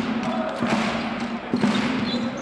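A basketball dribbled on a hardwood court, a few sharp bounces over steady arena background noise.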